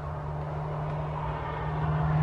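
A passing road vehicle: a steady low engine hum that grows gradually louder as it approaches.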